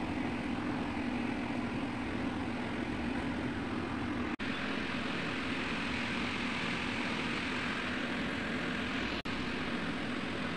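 Steady mechanical drone with no rhythm or change in pitch. It drops out abruptly and briefly twice, about four seconds in and near the end.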